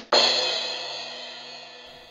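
A drum roll ends with a single crash cymbal hit that rings and fades away over nearly two seconds.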